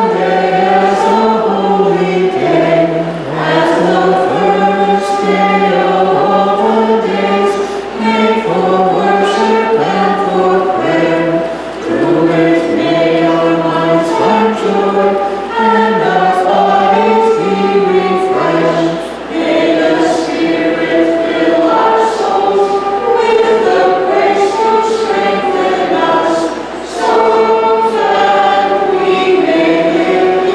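Choir singing a Maronite liturgical hymn in long phrases, with brief pauses between them.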